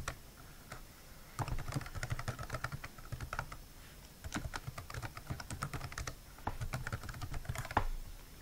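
Typing on a computer keyboard: quick runs of keystroke clicks, about three bursts separated by short pauses.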